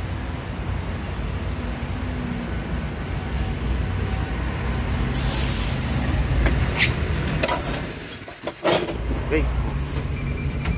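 London double-decker bus engine running as it pulls in and stands at the stop, with a burst of air hiss about five seconds in as the doors open. Several louder sharp knocks and clatters follow near the end as a passenger steps aboard.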